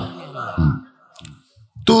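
A man's sermon voice trails off, followed by a pause of about a second with a faint short click in it, and speech resumes near the end.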